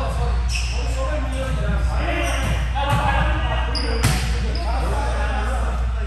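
Volleyball game in an echoing gym: the ball is struck a few times, most sharply about four seconds in, while players call out to each other over a steady low hum.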